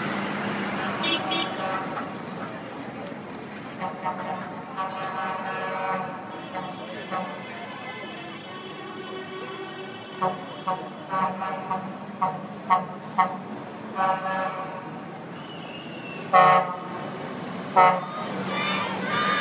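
Truck horns tooting as trucks drive past: one long held tone, then a string of short quick blasts, and two loud blasts near the end, over the steady hum of the trucks' engines.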